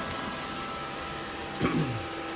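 Fan of a tabletop electric grill's built-in smoke-extraction hood running steadily, turned up high: an even hiss with faint hum tones. A brief vocal sound near the end.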